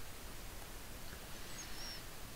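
Quiet room tone: a low, steady hiss of background and microphone noise, with two faint, brief high chirps in the second half.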